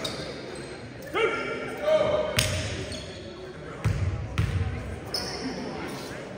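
A basketball bouncing a few times on a hardwood gym floor, with voices of players and spectators echoing in the gym.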